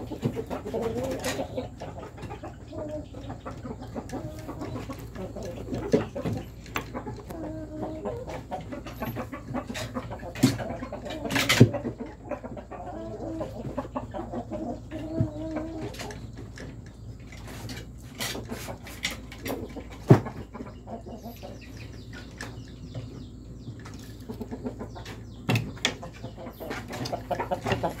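Chickens clucking on and off, mostly in the first half, with a few sharp knocks in between.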